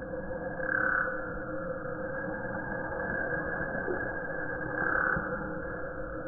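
A steady night chorus of frogs calling, with two louder calls, one about a second in and another near five seconds.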